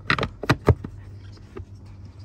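Plastic cabin-air-filter access door being pushed and snapped onto the Tesla Model Y's HVAC filter housing by hand: a few sharp clicks and knocks in the first second, then quieter handling.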